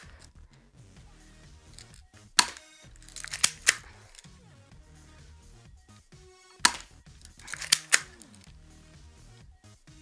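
Compact .45 airsoft pistol being fired: about six sharp snaps at irregular intervals, two of them in quick pairs.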